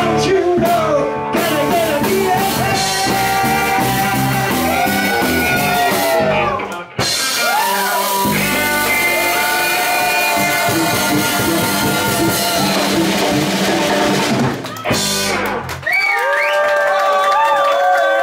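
Live rock-and-roll band playing: electric guitars, bass guitar and drum kit. The playing breaks off briefly twice, about seven seconds in and again near fifteen seconds, then comes back in.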